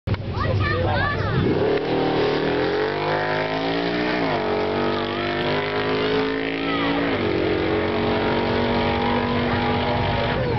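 V8 engine of a Datsun hillclimb car accelerating hard away up the hill, the note climbing in pitch through the gears. It drops sharply at two upshifts, about four and seven seconds in, and rises again after each.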